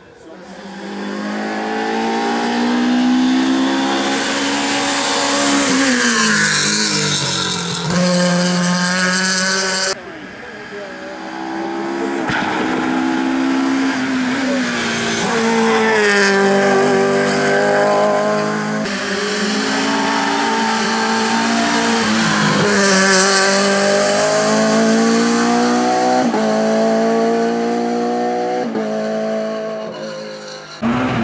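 Hillclimb competition car engines at full throttle, the pitch rising and falling again and again as the drivers change gear and lift for corners. The sound cuts off about ten seconds in, then a second car's engine runs loudly as it passes close and climbs away.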